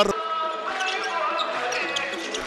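A handball being dribbled on an indoor sports-hall court, bouncing off the floor over a steady din of crowd noise in the arena.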